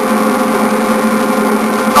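Steady droning hum and road noise inside a moving car's cabin, with a few fixed low tones and no change in pitch.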